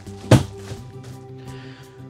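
A flip-down queen bed in a travel trailer drops onto its frame with a single thud near the start, over steady background music.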